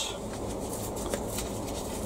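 Faint rustling of a paper seed packet being handled and opened by hand.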